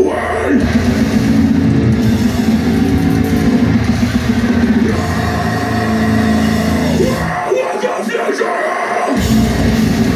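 Deathcore band playing live in a club, loud heavy guitars, bass and drums heard from among the crowd. About seven seconds in the low end drops out for a short break, and the full band crashes back in near the end.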